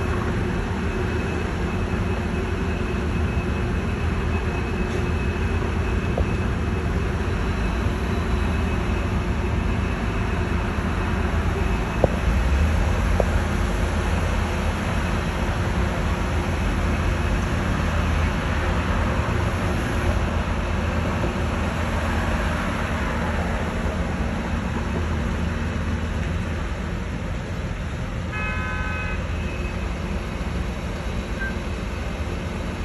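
Steady city street traffic, a low rumble of engines and tyres, with a few faint knocks around the middle and a short car-horn toot near the end.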